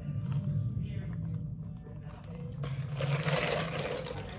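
Drinking through a straw from a plastic cup, ending in a noisy slurp that starts about two and a half seconds in and lasts over a second.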